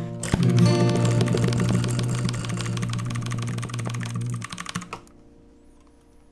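Rapid clicking of computer keyboard keys, typed as a percussion part, over an acoustic guitar chord ringing out at the end of a song. Both fade and stop about five seconds in, leaving a few faint clicks.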